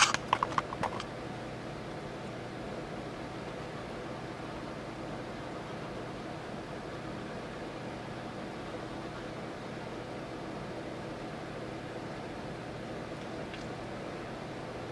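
Steady background hum and hiss of a small room, with a few sharp clicks in the first second.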